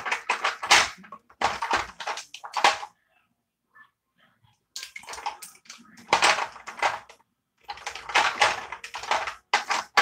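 Rummaging through a collection of plastic lip-product tubes and cases: clattering and rustling in three spells, with a near-silent pause about three to four and a half seconds in.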